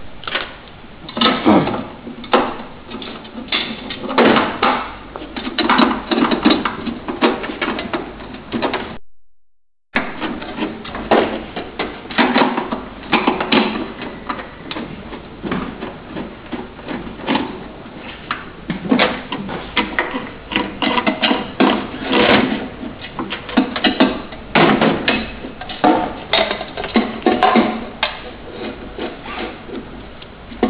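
Irregular knocking, clacking and rattling of a metal table frame, its legs and loose screws being handled and screwed together, with a sudden one-second gap about nine seconds in.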